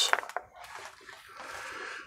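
Plastic sheet-protector pages in a ring binder being handled and turned: a few light clicks, then a soft plastic rustle in the second half.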